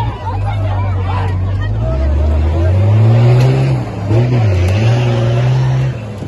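A motor vehicle's engine running and revving, with its pitch rising about two seconds in and dipping briefly about four seconds in, over a crowd of people shouting.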